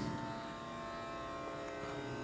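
A steady tanpura drone of several held pitches, sounding evenly and unchanging.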